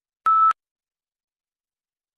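A single short, steady electronic beep shortly after the start: the PTE Read Aloud start tone, signalling that the microphone has opened and recording has begun.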